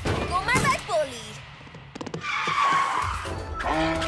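Animated cartoon soundtrack: background music under a character's short, gliding wordless vocal exclamations, with a noisy sound effect about two seconds in.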